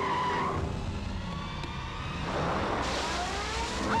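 A car's tyres squealing and its engine running as it drives in fast and brakes, with a rising rush of tyre and engine noise in the last second and a half.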